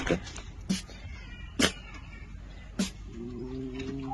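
Red fox giving three short, sharp cries about a second apart while tugging at a cloth in a play fight, then a longer steady whining call near the end.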